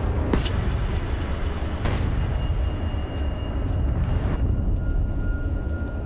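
A steady low rumble with a hiss over it, with a few faint knocks and a thin high tone that comes in partway through.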